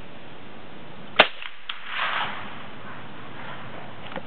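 A single sharp .22 rifle shot about a second in, followed by a few lighter clicks and a short rustle.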